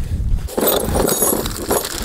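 Small metal hex (Allen) keys clinking and rattling as the bike's key set is sorted through to pick one out, with a low rumble in the first half second.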